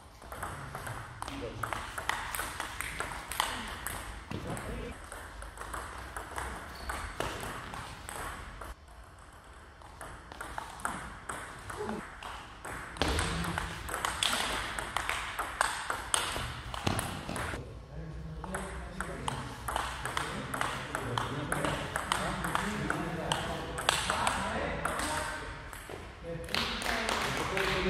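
Table tennis rallies: the ball ticking sharply off the rackets and the table in quick alternating hits, with short pauses between points, over voices talking in the hall.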